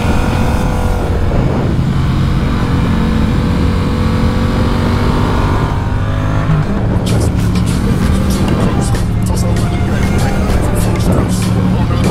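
Yamaha MT-07's parallel-twin engine running steadily while riding, its note changing about six and a half seconds in. Irregular sharp crackles run through the second half.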